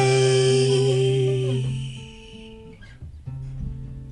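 The final guitar chord of a live song rings out and fades away after about two seconds. A softer guitar chord follows a little after three seconds in.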